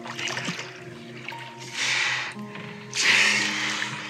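Calm background music of long held notes under sea-sound effects, with two louder rushes of noise about two and three seconds in.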